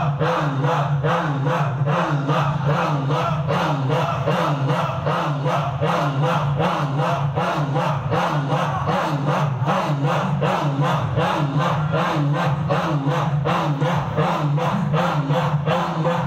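A large group of men chanting dhikr in unison, repeating "Allah" over and over in a fast, steady rhythm that does not break.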